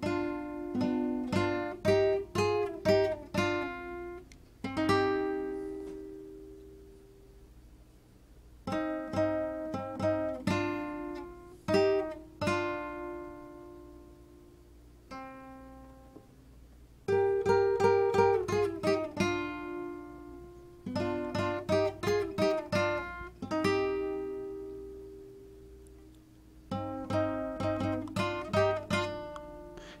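Classical guitar playing a melodic figure in thirds, two strings plucked together, mixed with strummed chords. It comes in several short phrases, each ending on a chord left to ring out.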